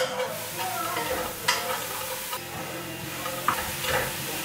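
Food sizzling in a pan on the stove as it is stirred, with a few sharp clinks of the utensil against the pan, about a second and a half in and near the end.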